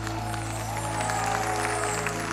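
A live band holding long, steady chords at the end of a song, with a studio audience applauding over it.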